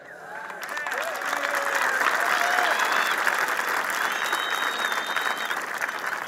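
Audience applauding, swelling over the first couple of seconds and then holding steady.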